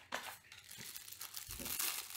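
Crinkling of a small clear plastic bag holding a USB cable as it is taken out of the box and handled, growing louder near the end.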